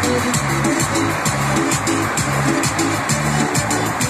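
Music with a fast, steady beat and a short low melody figure that repeats over and over.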